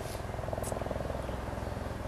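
A steady low background rumble with a couple of faint, brief ticks.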